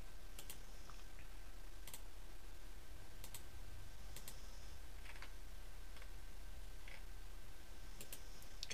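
Computer mouse clicking about ten times at irregular intervals, some clicks in quick pairs, as points of a line are placed. A low steady hum runs underneath.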